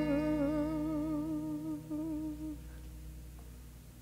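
Recorded soul song: a singer's long held note with vibrato over sustained chords, fading out about two and a half seconds in.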